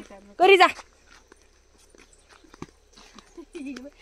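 A woman's short loud call about half a second in, then faint footsteps and scattered small clicks on a dirt path, with quiet voices near the end.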